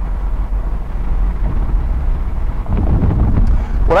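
Steady low road and wind rumble inside the cabin of a moving 2015 Volkswagen Jetta with its sunroof partly open, swelling briefly a little before the end.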